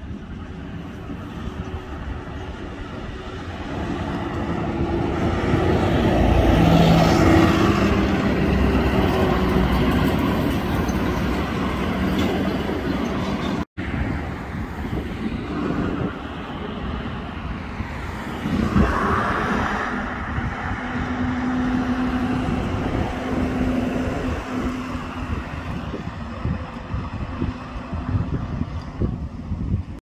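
City transit buses driving past in street traffic: engine drone and tyre noise swell as the first bus comes close, cut off suddenly about halfway through, then a second bus approaches and passes with another swell of engine and road noise.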